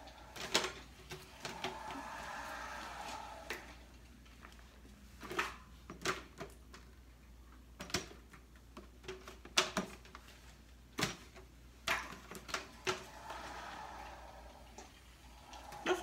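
Scattered light knocks and clicks as food, foil pans and seasoning jars are handled on a glass-topped table, about a dozen separate taps with pauses between them.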